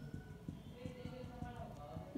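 Faint, irregular soft taps and rubbing from a marker pen being drawn across a writing board, with a faint voice in the background.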